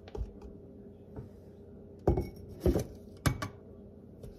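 A handful of short clicks and knocks of a plastic measuring cup and utensils while a cup of self-rising flour is scooped out, the loudest coming in the second half.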